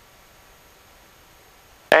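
Faint steady hiss, close to silence, with no engine or other distinct sound standing out; a man's voice begins right at the end.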